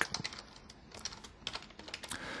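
Computer keyboard being typed on: a handful of irregular, fairly faint keystrokes.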